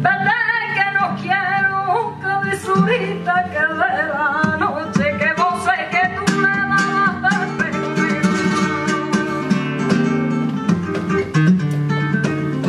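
Flamenco bulerías: a woman sings ornamented, wavering vocal lines over flamenco guitar, with sharp hand-claps (palmas) beating the rhythm.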